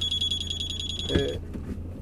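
Rear parking sensor buzzer of a four-stage reversing sensor giving a steady high warning tone, the close-range stop warning as the van backs toward a wall. It cuts off suddenly about one and a half seconds in, over the low hum of the idling engine.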